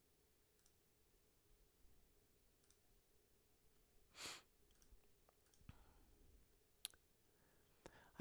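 Near silence, with a few faint, sharp clicks of a computer mouse selecting menu items, and a short soft rush of noise about four seconds in.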